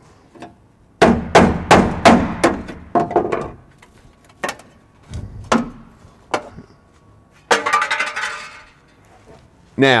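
Hammer striking a chisel on the steel floor brace of a 1958 Chevrolet Delray wagon, knocking out spot welds that have been drilled partway through: a quick run of about seven blows, then a few spaced ones. A short metallic rattle follows near the end.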